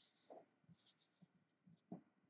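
Faint scratching of a mechanical pencil on paper in a few short strokes, with soft taps and rustles of paper being handled.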